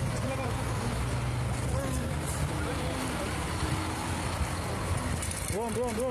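Steady low hum of an idling engine under street traffic noise, with people's voices calling out faintly and one louder call near the end.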